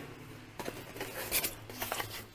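Cardboard scraping and rustling as a cardboard bottle sleeve is pulled out of a tightly packed cardboard shipping box. It comes in a few short scrapes, the loudest about halfway through.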